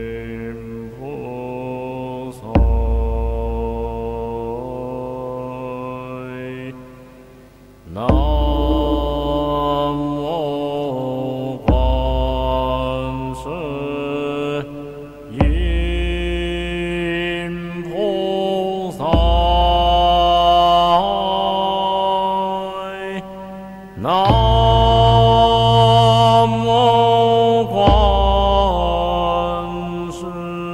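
Recorded Buddhist mantra chant set to music: a melodic sung chant over sustained instrumental tones, in repeating phrases about four to five seconds long, each starting on a deep low note.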